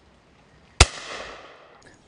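A single shotgun shot about a second in: a sharp report followed by an echo that fades away over about a second.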